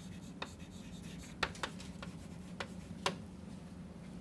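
Chalk writing on a blackboard: a handful of sharp, short chalk taps and strokes as a short label is written, over a steady low hum.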